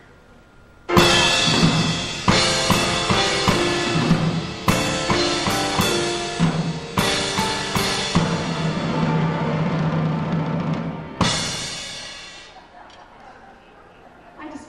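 Live grand piano and drum kit playing a short, loud, dramatic flourish: it bursts in about a second in with a crash, runs on with held chords punctuated by drum and cymbal hits, ends on one last accented hit near the end and rings away to quiet.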